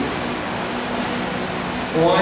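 Steady background noise, an even hiss with no distinct events: classroom room tone.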